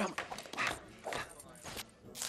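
Animated-film Foley of a quick flourishing bow: a rapid series of short swishes and taps from clothing and boots, about five in two seconds.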